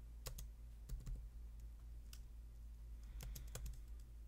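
Computer keyboard keys clicking: a few scattered presses, then a quick run of about half a dozen near the end, over a faint steady low hum.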